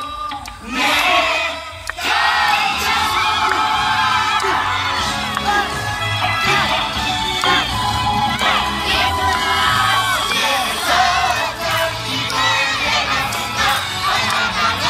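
A yosakoi dance team, many of them children, shouting calls together over music. After a brief lull at the start, the massed voices come in about a second in and keep going densely.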